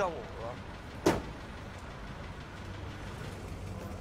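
Low steady hum of a vehicle engine idling, with one short, sharp sound about a second in and a voice trailing off at the very start.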